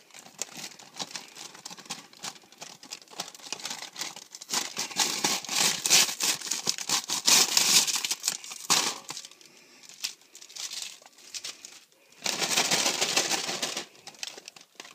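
Paper microwave popcorn bag crinkling and rustling as popped popcorn is shaken out of it into a bowl, in two spells: a longer one in the middle and a shorter one near the end.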